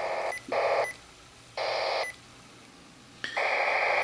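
Radio scanner's speaker playing short bursts of trunked-system control-channel data noise as it scans and stops on one channel after another. There are four bursts of uneven length: the first breaks off just after the start, two more follow within about two seconds, and the last starts near the end.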